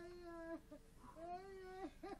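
A voice intoning two long wordless notes: the first held steady and stopping about half a second in, the second rising and then held before cutting off near the end. Short choppy syllables follow right at the close.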